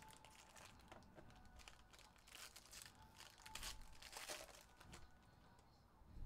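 Trading-card pack wrapper being torn open and crinkled by hand, faint, as a run of short rustles that is loudest in the middle.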